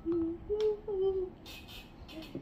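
A child's voice humming three short, steady notes in a row, followed by a brief hiss.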